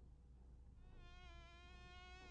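Faint, steady buzzing of a fly, starting about a second in.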